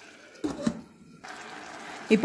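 Glass lid set down on a small stainless-steel cooker pot: two short clinks about half a second in, followed by a faint steady hiss.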